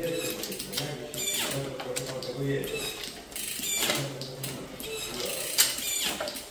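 Shimano 105 Di2 electronic derailleurs whirring several times as their motors shift gears, with the chain clicking onto new sprockets as the crank is turned by hand.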